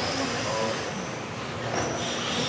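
Several 1:10 electric RC touring cars racing around an indoor hall track: a steady whine of the cars' motors mixed with tyre noise, echoing in the large hall.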